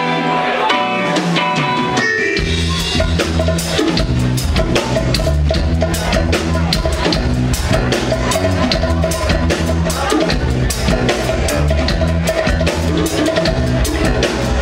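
Live reggae band playing an instrumental passage: keyboard and guitar at first, then the bass and drum kit come in strongly about two seconds in and settle into a steady groove.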